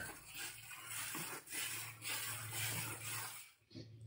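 Water spraying from a garden hose watering wand onto a compost pile of sticks and dry leaves. The spray is an uneven hiss that stops about three and a half seconds in.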